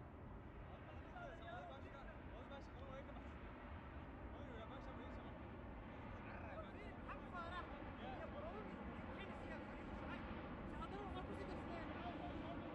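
Faint, distant shouts and calls of footballers across the pitch, heard as scattered voices over a steady low rumble.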